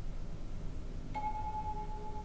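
A soft bell-like chime tone starts just over a second in and rings on steadily, over a faint low steady drone.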